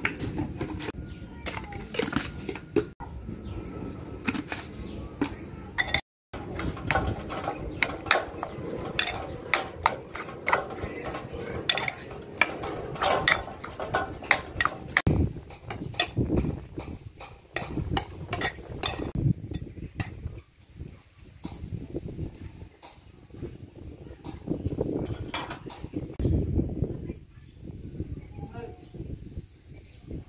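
A metal spoon mixing seasoned minced pork in a bowl, clinking and scraping against the bowl in quick irregular clicks. The clicks thin out in the last third.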